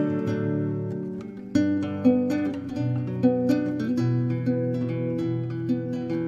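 Instrumental passage of a gentle song on plucked acoustic guitar, easing off about a second in, then picking up again with a run of picked notes.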